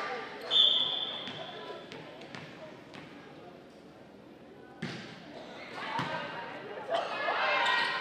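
Referee's whistle blown once, a steady shrill note of just over a second, signalling the serve. A few seconds later come sharp smacks of the volleyball being hit in a reverberant gym, then voices of players and spectators rise near the end.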